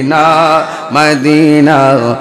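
A man singing a Bengali Islamic devotional song (gojol) in praise of Madina, holding long wavering notes with a short break about a second in.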